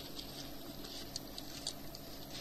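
Faint paper rustling and light clicks of Bible pages being turned, over the steady hiss and low hum of an old cassette recording.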